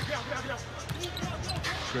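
Live arena sound of a basketball game: steady crowd murmur with the ball bouncing on the hardwood court, a commentator saying "good" at the very end.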